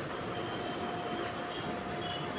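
Marker pen writing on a whiteboard: a thin, faint squeak held for over a second, over a steady background hiss.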